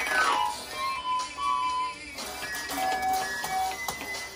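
Small toy electronic keyboard sounding single held notes one at a time, beginning with a quick falling electronic sweep.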